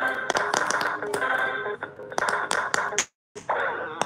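Bear-shaped electronic pop-it game toy playing its electronic music while its light-up buttons are pressed quickly, with many sharp clicks from the presses. The sound cuts out completely for a moment about three seconds in.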